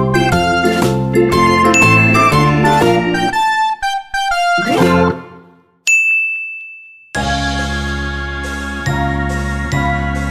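Tinkling, melodic children's background music that fades out about five seconds in. A single high chime tone rings for about a second, then a different music track with a steady bass starts.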